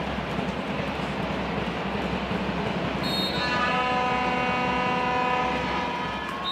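Crowd noise in a handball arena, then about halfway through a horn blast sounding several steady tones at once for about three seconds, stopping near the end.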